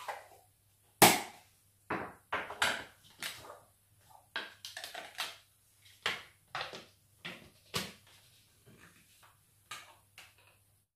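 Irregular knocks and clatter of kitchen things being handled, the loudest knock about a second in. A small container is handled and set down, and the plastic lid is fitted onto a blender jug near the end. The blender motor is not running.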